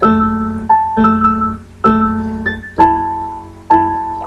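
Piano playing slow chords, one struck about every second, each left to ring and fade before the next.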